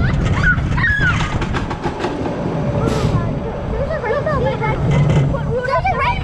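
Wild Mouse roller coaster car running along its steel track with a steady low rumble and rattle, while children riding in it squeal and call out near the start and again about two-thirds of the way through.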